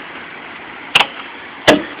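Two sharp clicks, about three-quarters of a second apart, over a steady low hiss.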